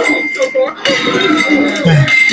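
Ceramic plates being smashed, shattering with sharp crashes.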